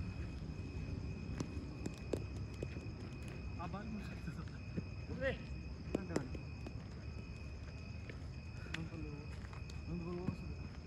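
A few sharp knocks of a cricket bat striking the ball, with short distant shouts from fielders, over a steady high-pitched insect call.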